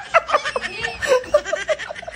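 A man laughing hard in quick, high-pitched bursts, several a second.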